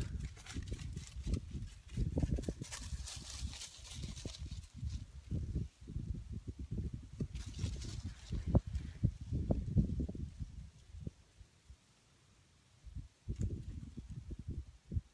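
Hands twisting strips of cedar bark into cordage close to the microphone: irregular low thumps and soft rustling of bark and fingers, with a quieter lull near the end.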